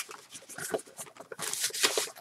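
Hands working at a small cardboard package, giving irregular scrapes, rustles and light taps of cardboard as it is pried open.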